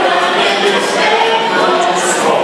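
Mixed choir of men's and women's voices singing together, holding chords.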